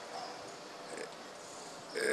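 A short pause in a man's speech: faint room noise with two soft, brief breath sounds from the speaker close to the microphone.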